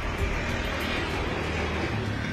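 Steady noisy rumble with a low hum underneath, without speech.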